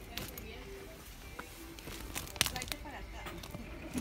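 Quiet shop ambience: a steady low hum with faint background music and distant voices, broken by a few sharp clicks, the loudest about two and a half seconds in.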